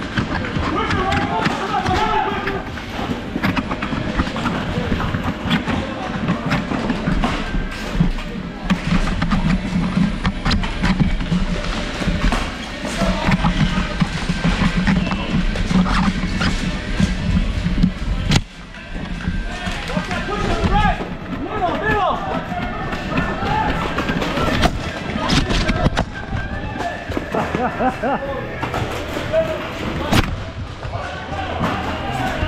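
Foam dart blasters being loaded and fired, giving repeated sharp plastic clicks and thuds, over background music and unclear shouting voices in a large hall.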